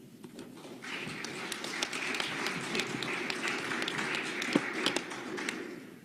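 Audience applauding: a round of clapping that swells about a second in and dies away near the end.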